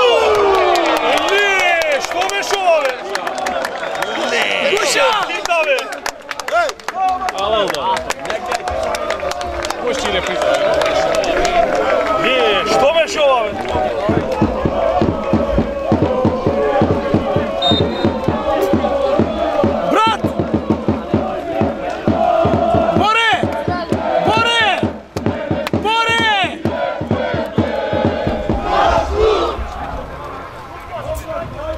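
Crowd of football supporters shouting and chanting together, with many sharp cracks scattered throughout and a run of repeated rising-and-falling calls from about two-thirds of the way in.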